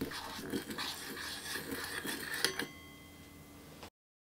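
Metal spoon stirring a liquid seasoning mixture in a stainless-steel measuring cup, scraping and clinking against the sides. About two and a half seconds in comes a sharper clink that leaves a short metallic ring, then the sound cuts off abruptly just before the end.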